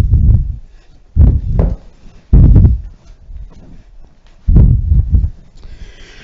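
Four loud, dull, low thumps and rumbles spread over a few seconds as a man gets down onto an exercise mat on a wooden floor and rolls onto his back.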